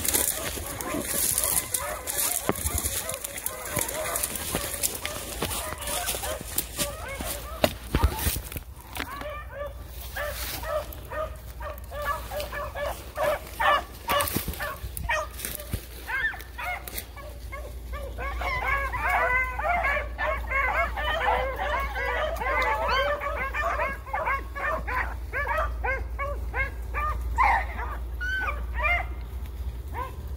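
Dogs barking and yipping in quick, excited bursts of many short calls, thickest in the second half, over the rustle of brush underfoot.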